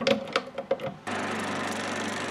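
A few light clicks, then about a second in a small metal lathe starts and runs steadily, its motor hum and a constant hiss holding at an even level as its chuck spins with brass hex stock.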